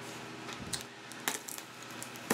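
A few sharp light clicks and clinks of a package and its contents being handled: three or so separate taps in two seconds.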